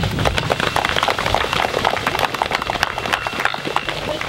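Audience applauding, a dense patter of individual hand claps.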